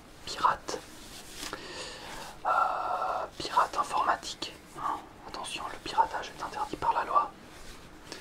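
A man whispering in French, a continuous run of breathy whispered speech with hissing sibilants.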